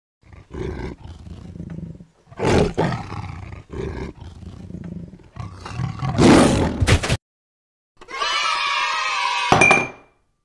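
Tiger roar sound effect: a run of growls with two louder roars about two and a half and six seconds in. After a short gap comes a held pitched tone with many overtones near the end.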